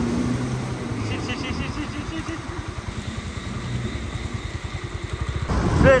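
A Yamaha Fascino scooter's small engine running at low speed while riding through floodwater, with a fast, uneven low putter. A voice calls out loudly near the end.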